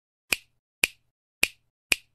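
Four sharp finger-snap sound effects, about half a second apart, in a title animation.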